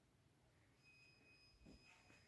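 Near silence: quiet room tone, with a faint high steady tone coming in about a second in and a soft low thump near the end.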